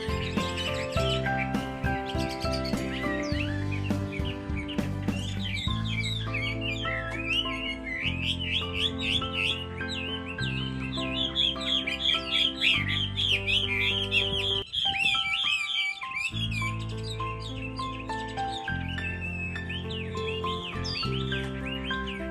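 Chinese hwamei singing a fast, varied warbling song, densest in the middle, over background music.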